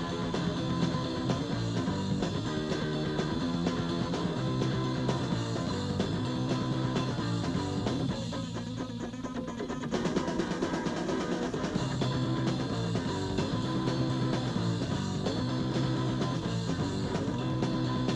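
Rock music with electric guitar and drums and no singing. The sound thins out for about two seconds, about eight seconds in, then the full band comes back.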